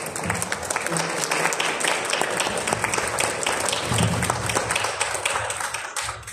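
Audience applauding: many hands clapping densely and steadily.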